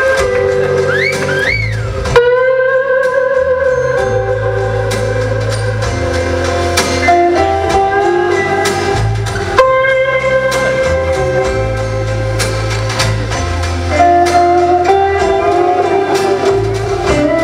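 Live band instrumental led by an electric Stratocaster-style guitar playing a slow melody in long held notes, with quick pitch bends up and down about a second in, over a steady bass line.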